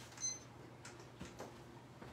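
An electronic kitchen timer gives a short, high beep, then a few faint clicks follow as its buttons are pressed to reset it from two minutes to twelve.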